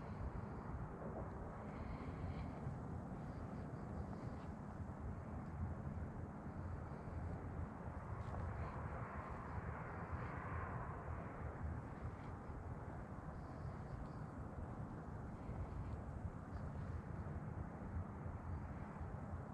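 Steady hum of distant road traffic, swelling louder for a few seconds about halfway through as a vehicle passes closer.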